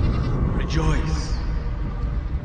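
A sheep bleating: one short, wavering call just under a second in, over a steady low background.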